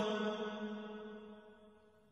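A male Quran reciter's voice in melodic mujawwad style, holding the last note of the verse-ending word 'akraman' at a steady pitch as it fades out over about a second and a half.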